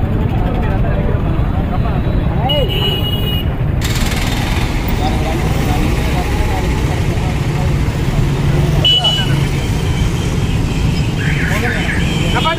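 Busy street ambience: a steady low rumble of passing traffic, with indistinct voices of a crowd standing around.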